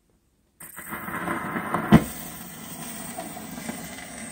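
A phonograph needle set down on a spinning 1907 Victor shellac 78 rpm disc about half a second in, followed by the steady hiss and crackle of the record's surface in the groove before the music starts. One loud click near the two-second mark stands out.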